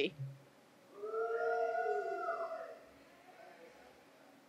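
A person's single long drawn-out 'woo' cheer, held for about a second and a half and falling in pitch at the end.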